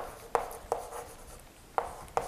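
Chalk writing on a chalkboard: about four short, sharp taps and strokes of the chalk, with quiet stretches between them.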